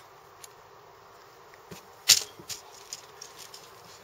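Small clicks and taps from handling a needle and braided line at a table: one sharp click about two seconds in, then a few fainter ticks.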